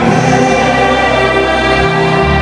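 Live concert music recorded from within a stadium crowd: a male singer holding long notes into a microphone over the band, with what sounds like many voices singing together.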